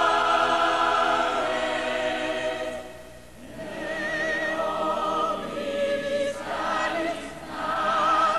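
Classical choral singing: voices holding long notes with vibrato. It drops away briefly about three seconds in, then a new phrase begins.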